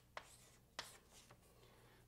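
Near silence with a few faint, brief strokes of writing as a diagram is drawn.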